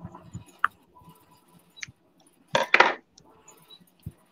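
A few light clinks and clicks of small objects being handled, then a louder clattering burst, in two quick parts, about two and a half seconds in.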